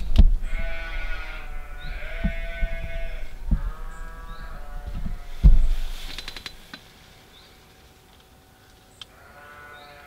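An animal's long, pitched cries, three of them, each lasting one to two seconds, with a few low thuds early on and in the middle.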